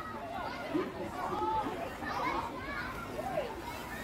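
Children's voices chattering and calling out, with no clear words, in short rising and falling snatches.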